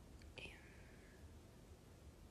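Near silence: quiet room tone with a low steady hum. About half a second in comes one faint short chirp: a click, then a high tone sliding down in pitch over less than a second.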